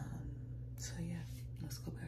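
A woman whispering in short bursts, over a steady low hum.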